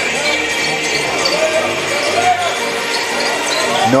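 Live court sound from an indoor basketball game: scattered voices of players and crowd in the gym hall, with ball bounces on the hardwood floor.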